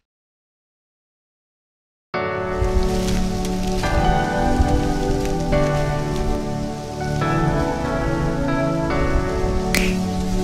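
Silence for about two seconds, then background music starts suddenly: held chords that change every second and a half or so, with scattered faint clicks.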